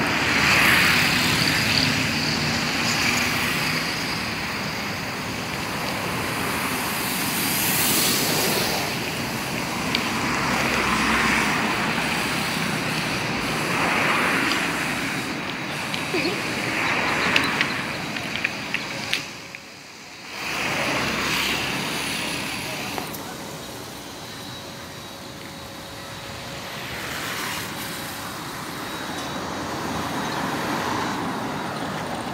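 Road traffic: cars passing one after another on a busy street, each swelling and fading, with a few sharp clicks about two-thirds of the way through and a brief drop in level just after.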